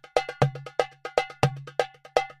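Short percussion music cue: a brisk, even pattern of sharp, pitched clacks, about five or six a second alternating strong and weak, over a low bass note. It is a transition sting marking a break between segments of the talk.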